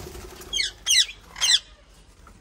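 Young birds peeping from inside a clay nest pot: three sharp, high calls, each falling in pitch, about half a second apart.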